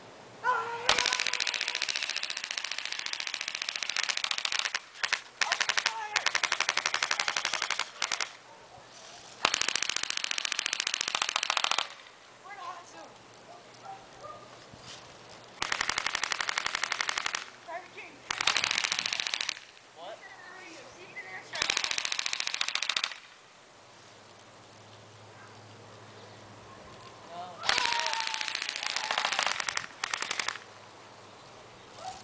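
A gun firing on full automatic in about eight long bursts of rapid shots, each lasting one to three seconds, with short pauses between them.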